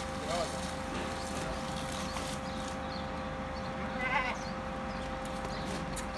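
Goat bleating: a short call near the start and a louder bleat about four seconds in, over a steady hum.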